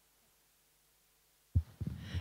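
Near silence, then about one and a half seconds in a few short low thumps from a handheld microphone being moved and handled.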